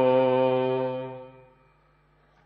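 A man chanting a line of the Hukamnama (Gurbani) in the drawn-out recitation style, holding one long note that fades out about a second and a half in. A pause near silence follows.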